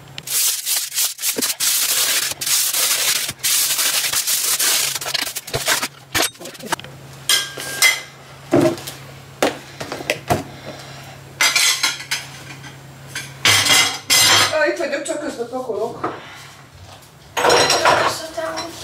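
Aluminium foil being crinkled and crumpled while sandwiches are wrapped: a long stretch of continuous crinkling over the first six seconds, then shorter bursts of rustling with a few light knocks.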